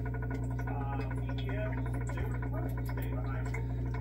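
Steady low hum with a fast, faint ticking over it from the running chemical bath rig, as a circuit board's gold plating is stripped in the bubbling solution; faint indistinct voice-like sounds drift in during the first two seconds.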